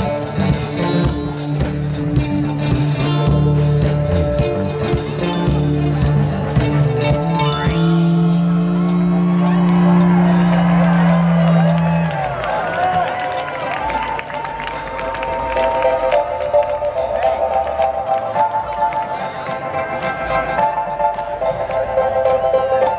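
Live dance-punk band playing loudly with a heavy bass line; about eight seconds in a low note is held for several seconds, then the bass drops out and a repeating higher-pitched riff carries on over cheering from the crowd.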